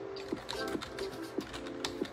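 Computer keyboard typing: irregular, sharp key clicks, a few per second, over quiet background music.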